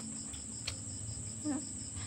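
Crickets chirping, a steady high trill with fast even pulsing. A single sharp click comes partway in, and a short low hum near the end.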